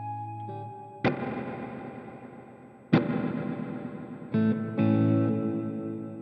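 Clean electric guitar played through the Sonicake Matribox II's stereo hall reverb, set wet with a long decay. Two strummed chords about two seconds apart each ring out into a long fading wash, and a couple more chords come in near the end.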